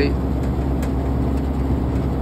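Steady low hum and rumble of a Daikin VRV IV outdoor unit running.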